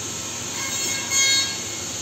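Steady hiss from plastic vacuum-forming equipment, with a brief high-pitched squeal lasting about a second, starting about half a second in.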